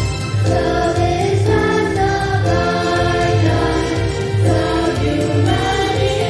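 A group of children singing the school song in unison into microphones, with sustained melodic lines over a steady low beat of accompaniment.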